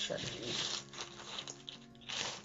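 Thin white plastic wrapping rustling and sliding as it is pulled off a smartphone gimbal, busiest in the first second and fading after.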